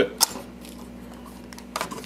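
Small hard parts being handled: one sharp click shortly after the start, then a few fainter clicks near the end, over a low steady hum.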